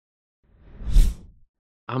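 Intro whoosh sound effect with a deep low boom underneath. It swells to a peak about a second in and fades within half a second.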